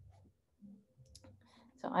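A few faint, sharp clicks over quiet room noise, then a woman starts speaking near the end.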